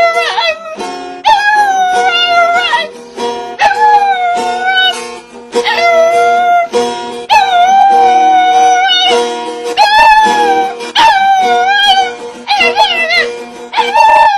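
A woman singing a slow, high melody in long held notes with wavering ornaments, phrase after phrase with short breaths between, over steady low accompanying notes.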